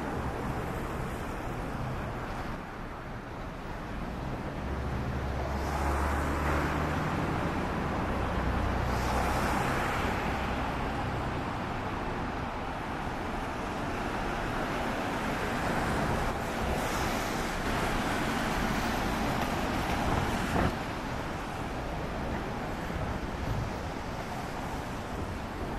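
Road traffic noise, with one vehicle swelling past about five to eleven seconds in, and a single short knock near the end.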